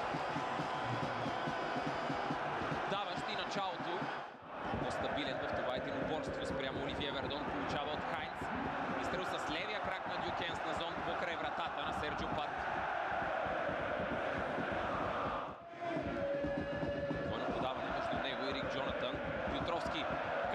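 Large football stadium crowd making a continuous din of chanting and singing, cut off sharply twice, about four seconds in and again near the end, where the footage jumps.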